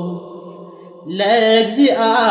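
Chanted singing: a long held note dies away, then after a short lull a new phrase with a wavering, sliding melody begins about a second in.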